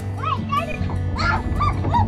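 Children's short, high-pitched cries and squeals, coming several times a second and thickening toward the end, over background music with steady held bass notes.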